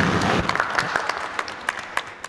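Audience applauding, loudest at the start and thinning out into scattered claps near the end.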